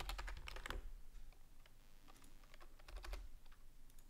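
Faint computer keyboard typing: a run of quick key clicks, densest in the first second and again towards the end.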